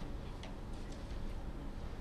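Quiet conference-room tone: a steady low hum under a faint even hiss, with a faint tick about half a second in.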